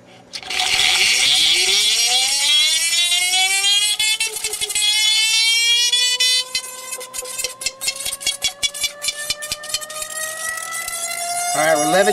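Rodin coil sphere spinner starting up: the metal ball in the glass tube spins up in the coil's field, and a whine rises steadily in pitch as it gains speed before levelling off at high speed. In the second half a fast rattle of clicks runs alongside the whine.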